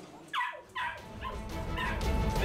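Two short, high calls from a pet animal, each falling steeply in pitch, about half a second apart; music comes in after them.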